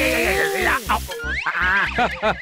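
Cartoon soundtrack: background music with a steady beat, overlaid with sliding, bending comic sound effects and a quick rising whistle-like glide about halfway through.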